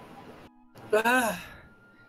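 A person's short voiced sigh about a second in, falling in pitch and breathy.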